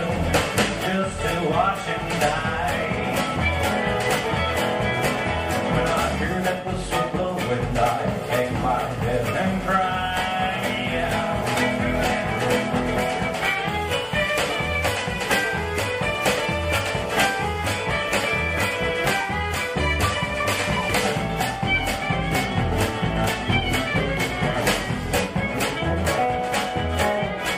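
Live acoustic country band playing an instrumental break: acoustic guitar, mandolin, fiddle and upright bass over a steady drum beat, with quick high melodic runs from about ten seconds in.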